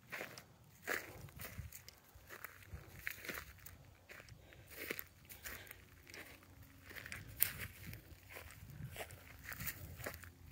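Footsteps crunching over dry grass and cracked dirt at a walking pace, about one or two steps a second.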